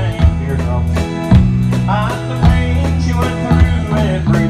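Live band playing an instrumental passage between sung lines: drum kit keeping a steady beat over bass notes that change about once a second.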